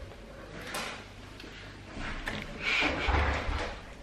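Soft sucking and slurping noises from eating a jelly straw: a couple of short ones, then a longer one about three seconds in.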